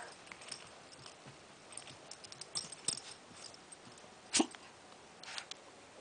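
A pug-mix puppy making small faint sounds at close range as it plays, with scattered soft clicks and scuffles. A person's brief "huh?" comes about four seconds in.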